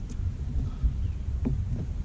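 Low, uneven rumble of wind buffeting a mounted camera's microphone, with a couple of faint clicks about one and a half seconds in.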